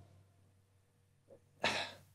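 Near silence for about a second and a half, then near the end one short, breathy burst of a man's breath into a close headset microphone.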